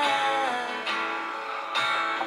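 Music led by guitar, held notes with a change of chord about a second in and again near the end.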